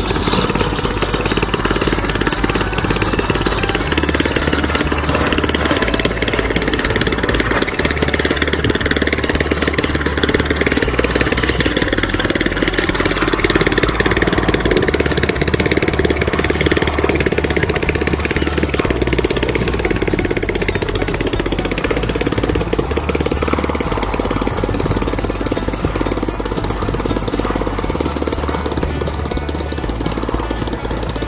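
Small longtail boat engine running steadily as the boat pulls away, growing slightly fainter toward the end, with music playing alongside.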